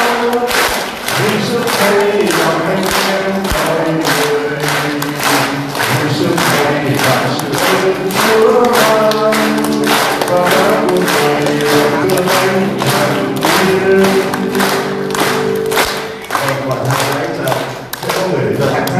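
Choir singing a hymn over a steady beat of about two strokes a second.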